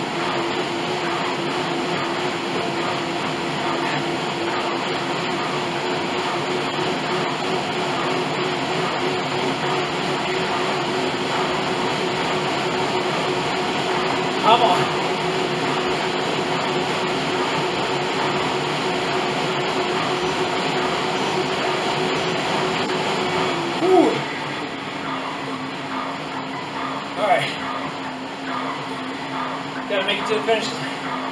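Bowflex Max Trainer M7's air-resistance fan whining at a steady pitch under hard pedalling during a sprint interval; about four-fifths of the way through the whine drops to a lower pitch as the pace eases. A few short, louder sounds break in, one near the middle and two near the end.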